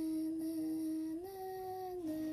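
A person humming one long, steady note that steps slightly higher about a second in.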